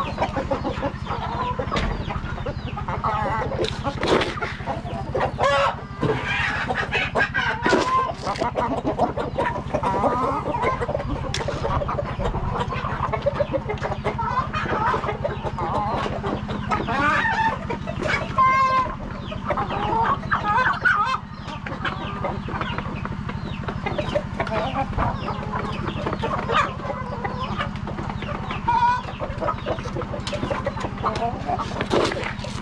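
Chickens clucking and calling again and again, many short calls overlapping, over a steady low hum.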